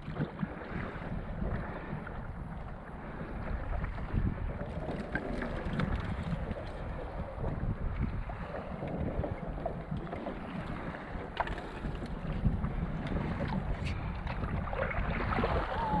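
Stand-up paddle strokes and water splashing and lapping around a paddleboard, under steady wind noise on the microphone.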